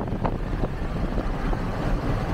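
Wind buffeting and tyre road noise through the open side window of a moving car, a steady low rumble.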